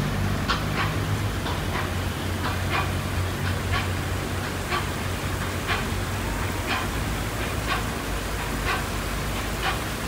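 Footsteps of a person walking on paving, a sharp step about once a second, over a steady rushing hiss of running water. A low hum underneath fades out about halfway through.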